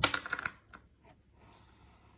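A short clinking clatter lasting about half a second, then a couple of faint ticks, as the drawing hand with its metal wristwatch lifts the pen off the paper and moves it to a new spot.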